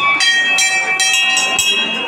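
Several hanging brass temple bells rung by hand, their high ringing tones overlapping, with fresh strikes near the start and again about a second in.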